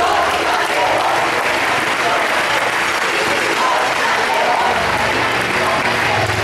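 Audience applauding steadily in a hall, with voices mixed in.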